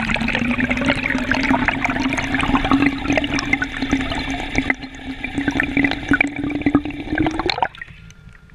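Electric trolling motor on a kayak, heard underwater: a steady propeller hum that edges slightly higher in pitch, over a dense crackle of bubbles and rushing water. The sound cuts off sharply near the end.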